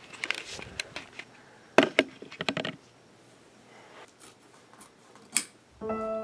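Handling noise: a run of sharp clicks and knocks with short rustles as the camera is picked up and repositioned, densest about two seconds in, then a lull with one more click near the end.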